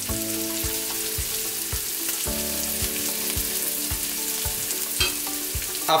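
Chopped ginger, bird's eye chili and green chili sizzling steadily in hot oil in a nonstick wok, stirred with a spatula.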